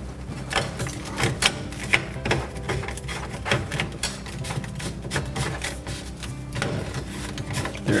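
Black plastic P-trap pieces being pushed together and twisted into line by hand, giving irregular small clicks and rubs of plastic on plastic as the glued joint is seated. A low steady hum runs underneath.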